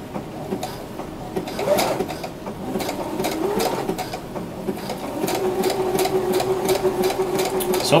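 Electric sewing machine stitching slowly under a lightly pressed foot pedal, its motor humming with a steady run of needle clicks. It picks up and runs more steadily about five seconds in.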